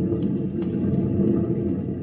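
A steady low drone of several held tones, a background sound bed that carries on under the dialogue.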